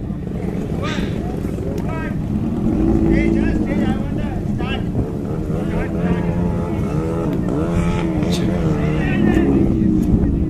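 Kawasaki Ninja ZX-14R inline-four engine running steadily at low revs as the bike rides slowly, under a voice over a loudspeaker.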